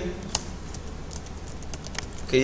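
Typing on a computer keyboard: one sharper click about a third of a second in, then a quick run of light keystrokes.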